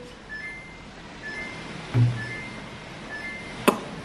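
Faint electronic beeping: short high beeps on two alternating pitches, repeating about once a second, from an unidentified device. A dull thud comes about halfway through, and a sharp click near the end is the loudest sound.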